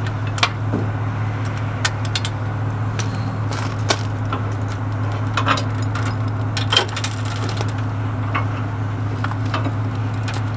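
Steel trailer safety chains clinking and rattling as they are unhooked from the hitch, a scatter of sharp metallic clinks, over a steady low hum.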